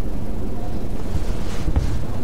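A steady low rumble of background noise, with no speech over it.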